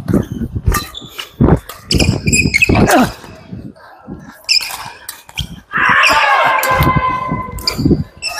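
Badminton doubles rally on a wooden sports-hall floor: a string of sharp racket hits on the shuttlecock and shoes squeaking and thudding on the court, with players' voices, in an echoing hall. About two seconds from the end comes a longer, louder pitched sound.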